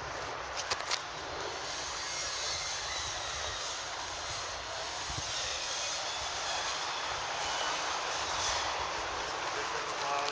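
Steady rushing engine noise from outdoor traffic, slowly growing louder, with a few sharp clicks about a second in.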